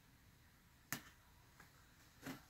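Near silence broken by a single sharp click about a second in, as a small box cutter works into the taped seam of a cardboard box.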